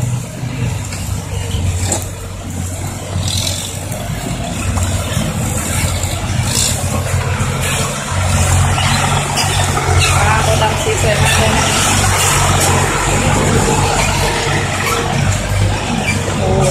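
Six-wheel dump trucks' diesel engines running as the trucks drive by. The engine hum grows louder about halfway through as a truck comes up close.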